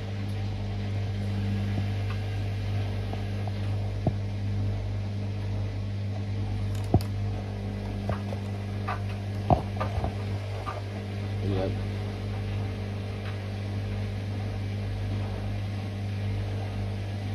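Tricity Bendix 1000 front-loading washing machine on its final spin, its motor giving a steady, even hum. A few sharp clicks or knocks come through it, the clearest about 4, 7 and 9.5 seconds in.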